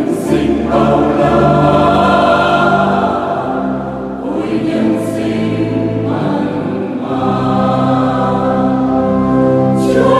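Mixed choir of men and women singing a Vietnamese Catholic hymn, holding long notes in chords that change every second or two.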